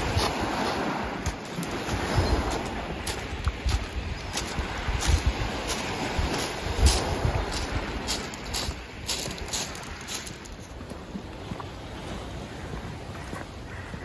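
Gentle sea surf washing on a pebbly shore, with wind rumbling in gusts on the microphone and scattered sharp clicks.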